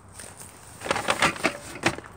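Handling noise: a quick run of sharp clicks and rustles about a second in, as plastic grocery bags and the phone are moved about in a car trunk.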